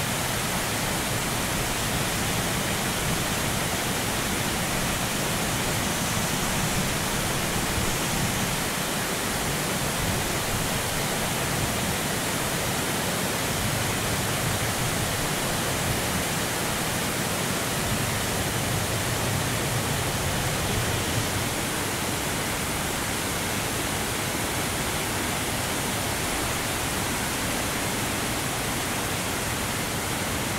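Small waterfall and its white-water rapids rushing into a pool, a steady, unbroken noise of falling water close by.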